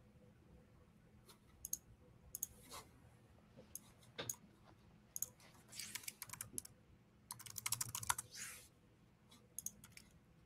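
Faint computer keyboard typing: scattered key clicks, with two short quick runs of keystrokes about six and eight seconds in.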